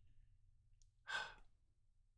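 One short breath close to the microphone, about half a second long, a little past a second in; otherwise near silence.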